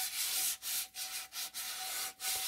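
Scouring sponge scrubbed hard back and forth inside a frying pan: a rasping scrape in about five quick strokes, working at burnt-on deposits that a cleaning agent has not loosened.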